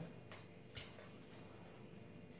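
Two faint short clicks about half a second apart, forks knocking against the bowls as the noodles are twirled, over quiet room tone.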